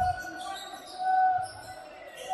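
A basketball dribbled on a hardwood court, with one bounce right at the start, over sustained voices from the stands holding a steady sung note.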